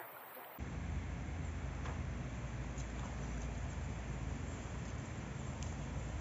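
Steady ambient noise beginning about half a second in: an even hiss with a low rumble and a few faint ticks.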